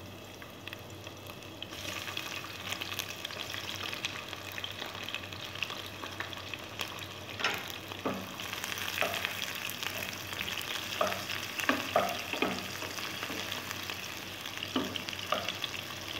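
Sliced red onion sizzling in hot oil in a coated frying pan; the sizzle thickens about two seconds in. From about halfway, a wooden spatula stirs the onions, with short scrapes and taps against the pan.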